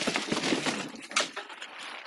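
Cardboard box flaps and packaging rustling and crinkling as a padded fabric fridge cover is lifted out of the box, with a run of small crackles and one sharper crackle a little past the middle.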